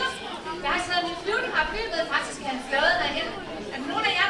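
Speech: a woman talking without pause, with chatter from the audience.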